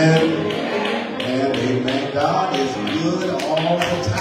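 A man singing in long, held notes that rise and fall, over a steady tapping beat of about two to three strokes a second.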